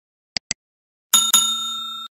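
Subscribe-animation sound effects: two quick clicks, then, about a second in, a bell struck twice in quick succession and ringing as it fades away.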